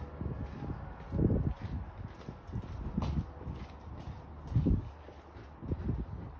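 Horse's hooves on a sand arena: soft, irregular low thuds, with two louder low thumps, one just over a second in and one near five seconds in.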